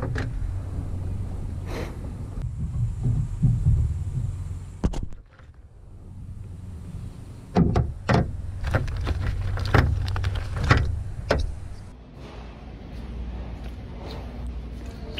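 Knocks and clicks of a metal roof rail and its mounting hardware being handled and set against a pickup truck's roof, a few sharp strikes spread irregularly over a low steady rumble.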